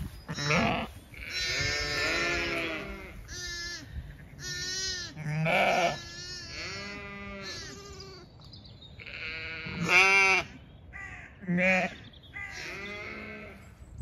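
Zwartbles ewe and her newborn lambs bleating back and forth, about ten calls in turn, some lower and some higher pitched, the loudest about ten seconds in.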